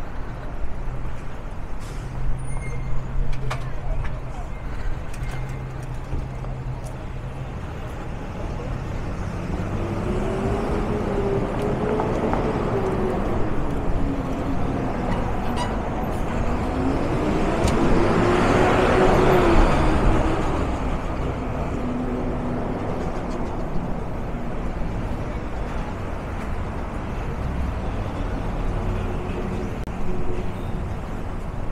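City street traffic: a steady low hum of passing cars, with one vehicle's engine note rising and falling twice as it goes by, loudest about two-thirds of the way through.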